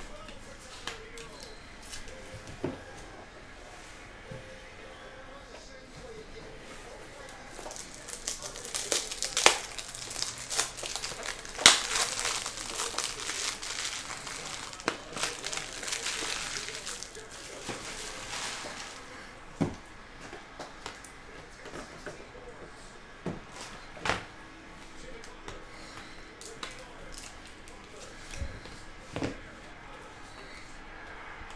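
Plastic card packaging crinkling and rustling as it is handled, in a burst of about ten seconds in the middle with a couple of sharp crackles, then a few light taps near the end.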